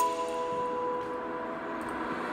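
Electronic music in a quiet break: a few held notes ring on and slowly fade, with no beat.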